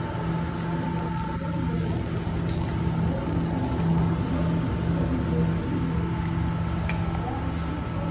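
Steady hum of cleanroom ventilation and exhaust air, with faint constant tones in it. Two light clicks, about two and a half seconds in and near seven seconds.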